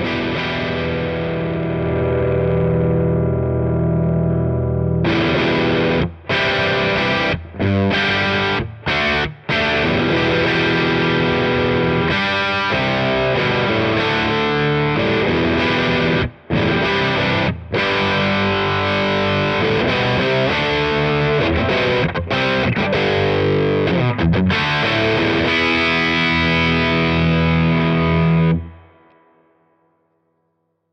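Overdriven electric guitar played through a Supro Black Magick Reverb valve combo amp: a chord held and ringing for about five seconds, then a riff with short stops. A last chord rings and dies away shortly before the end.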